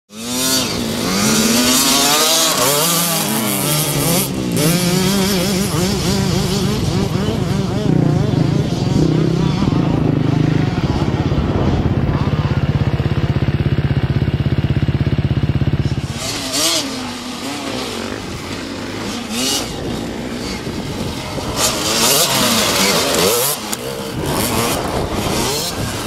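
Dirt bike engine revving up and down as it is ridden over dirt, holding one steady high pitch for several seconds around the middle before dropping back.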